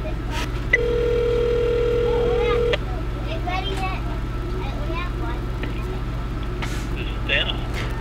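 Outgoing phone call ringing on the phone's speaker: one steady two-second ring tone about a second in, the call waiting to be answered.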